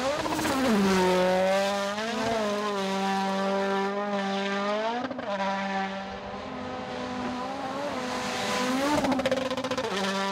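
Toyota Yaris WRC rally car's 1.6-litre turbocharged four-cylinder engine running hard at high revs, its pitch dropping and climbing again several times as the driver shifts and lifts through the gears. Near the end there is a rapid run of sharp pops.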